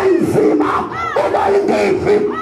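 Many voices shouting and chanting loudly together, with pitch sliding up and down, amplified through a PA system.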